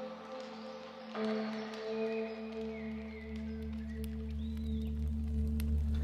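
Quiet ambient electronic music: sustained ringing tones, with a low drone coming in about a second in and the music slowly growing louder.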